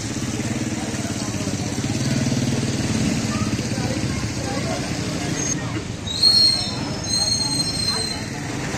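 Busy street noise: an engine running nearby with a steady low hum, people talking around it, and two short high-pitched tones near the end.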